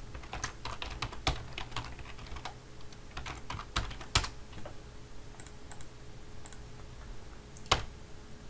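Computer keyboard typing: a quick run of key clicks over the first few seconds, a louder keystroke about four seconds in, then a few scattered clicks and another loud keystroke near the end.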